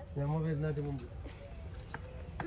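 A person's voice: one drawn-out syllable lasting under a second, then low background noise.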